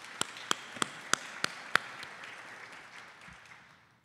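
Audience applause, with one person's hand claps close to the microphone standing out at about three a second; the near claps stop about two seconds in and the applause fades away toward the end.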